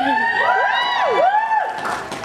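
Several audience members squealing and whooping at once, high voices sliding up and down in overlapping calls that fade out near the end.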